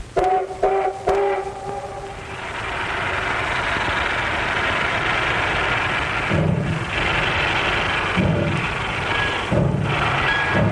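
Steam locomotive whistle giving three short toots, followed by a steady hiss of venting steam. Near the end come a few low exhaust chuffs, spaced about one and a half to two seconds apart.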